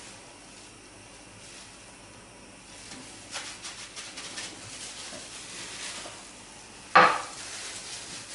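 Egg-and-cheese patties laid by hand into a frying pan of fat that is not yet well heated, giving faint, scattered crackling. Near the end comes a single sharp knock of kitchenware.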